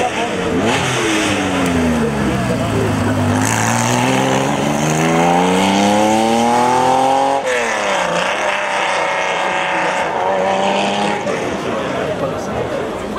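Porsche 911 RS 3.0 rally car's air-cooled flat-six engine as the car comes past. Its revs fall as it slows, then climb hard under acceleration for about four seconds, break off at a gear change about seven and a half seconds in, and climb again in the next gear as it pulls away.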